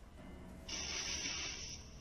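A hissing, scratchy noise from the audio of night-time security-camera footage, starting about two-thirds of a second in, breaking off briefly, then starting again near the end.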